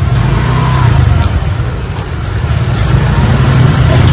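A motor vehicle engine running close by, a loud low rumble that dips about halfway through and then swells again.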